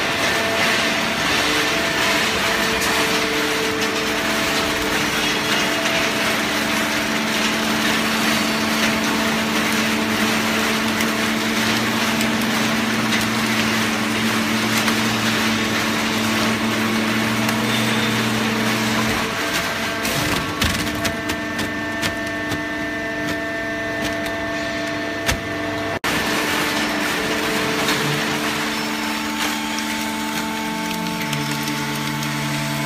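Horizontal hydraulic baling press running, its pump motor humming steadily under a dense crackling of waste being crushed and pushed through the bale chamber. About two-thirds of the way through the crackling thins to scattered clicks, and the sound then shifts abruptly.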